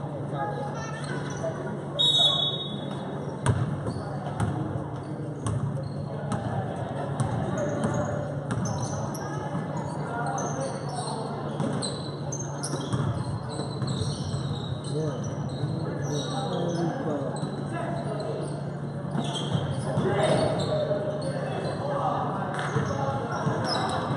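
A basketball being dribbled on a gym floor during play, with repeated sharp bounces and short high sneaker squeaks, echoing in the hall over spectators' chatter. A steady low hum runs underneath.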